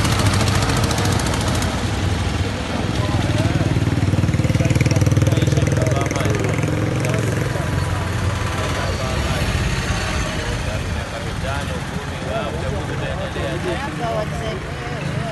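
Street traffic: a passing auto-rickshaw's small engine running close by for the first couple of seconds, then a steady vehicle hum that swells a few seconds in and fades. People talk in the background during the second half.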